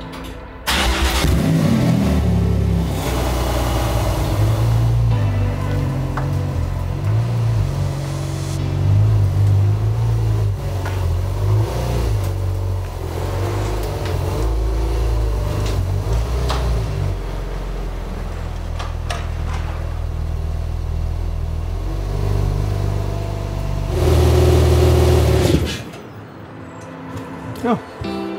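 A Porsche 911 GT2 RS's twin-turbo flat-six starts up about a second in, then runs with changing throttle as the car is driven slowly up onto a car trailer. It gets louder near the end and then stops suddenly.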